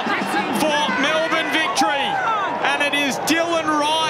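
Excited male speech: the match commentator calling a goal, his pitch swinging widely.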